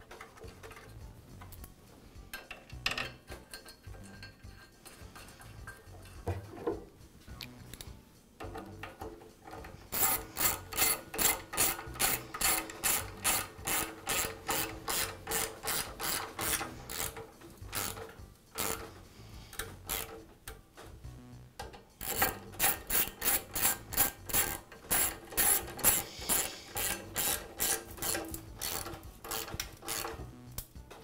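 Socket ratchet wrench ratcheting in quick, regular strokes as screws are driven to secure a chop saw base to its cutter head. It comes in two long runs, from about a third of the way in and again after a short pause, with scattered light handling knocks before the first run.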